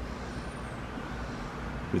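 Steady low background rumble and hiss, with no distinct events.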